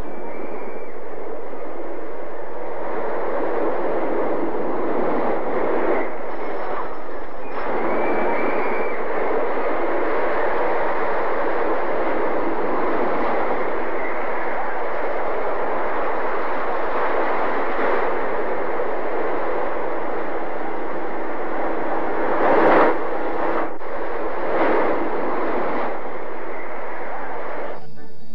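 Steady rumbling clatter of a roller coaster train running along its wooden track, with a brief louder swell near the end.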